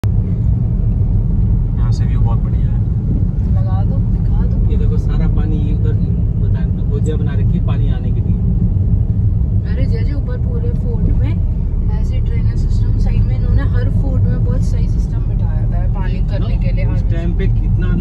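Steady low road and engine rumble inside the cabin of a moving car, with quiet talking over it.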